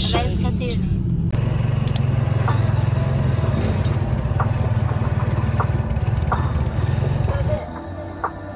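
A motorcycle-and-sidecar tricycle running along the road: steady engine rumble and road noise as heard from inside the sidecar, with a few light rattles. It starts abruptly about a second in and cuts off just before the end.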